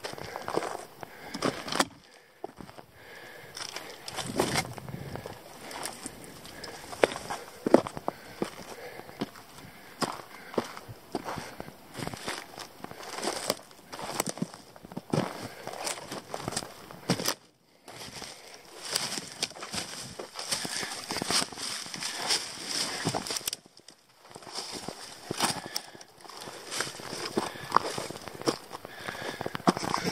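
Footsteps of a hiker scrambling over rock and through low shrubs: irregular crunching and brushing of twigs and branches, with a few brief gaps of near silence.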